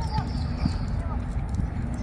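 Outdoor park ambience: a few birds chirp briefly near the start over a steady low rumble, with a faint knocking rhythm of footsteps and distant voices.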